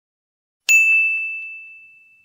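A single bright ding, a sound effect for a logo intro, struck about two-thirds of a second in, ringing on one high tone and slowly fading, with a few faint ticks just after the strike.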